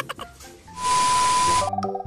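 An editing transition sound effect: a loud burst of hiss with a steady high beep, lasting about a second. Light keyboard background music starts just after it, near the end.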